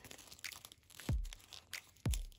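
Folded paper crinkling and crackling as fingers work open a layered origami model, with a dull thump about a second in.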